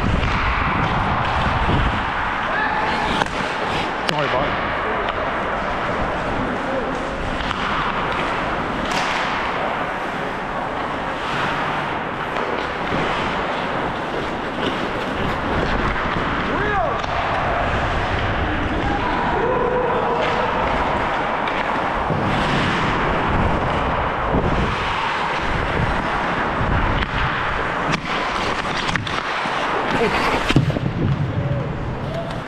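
Ice hockey play heard from a helmet camera on a skating player: a steady rush of skates on the ice, broken by many sharp clacks of sticks and puck, with players' voices in the rink.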